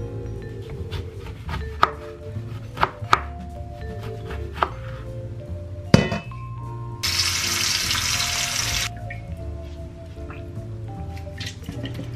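A chef's knife cutting through a lemon onto a plastic cutting board, a few sharp knocks of the blade. Then a loud clunk of a stainless steel bowl in a steel sink, and a tap running into the bowl for about two seconds. Background music plays throughout.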